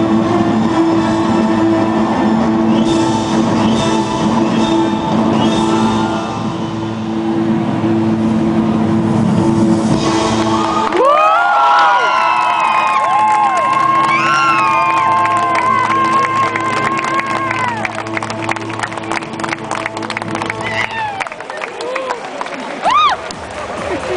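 Live symphony orchestra playing a film score in sustained chords, which fade out about halfway through. The audience then breaks into cheering and whooping, with applause building near the end.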